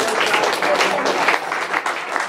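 A congregation applauding, many hands clapping at once, with voices mixed in.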